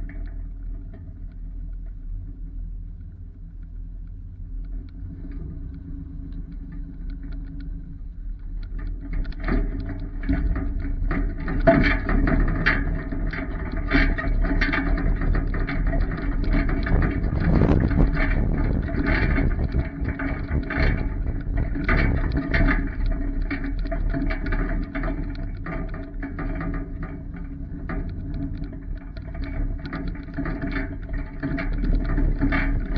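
Truck towing a trailer with a car on it, rolling slowly across a rough gravel yard: a steady engine rumble, joined about nine seconds in by louder, frequent rattling and clanking from the trailer and its load.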